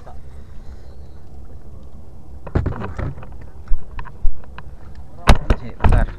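A run of sharp knocks and thumps from gear being handled in a small outrigger boat, starting about halfway through, over a steady low rumble of wind on the microphone.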